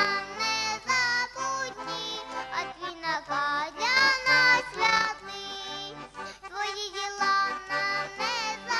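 A young boy singing a Ukrainian insurgent folk song, accompanied by an accordion.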